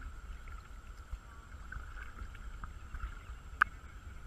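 Kayak paddling on calm water: soft paddle and water noise over a steady low wind rumble on the microphone, with one sharp click about three and a half seconds in.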